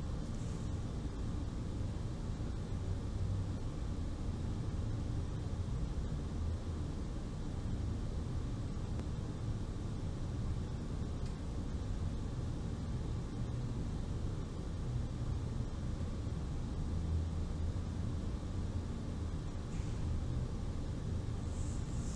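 A steady low background rumble that never changes, with no other sounds.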